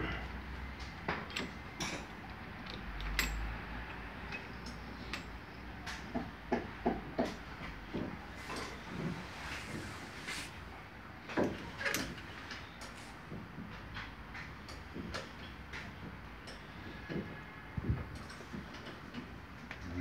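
Irregular metallic clicks and knocks of hand tools and brake parts being handled at a car's front wheel during a brake pad change, with a few louder knocks around the middle.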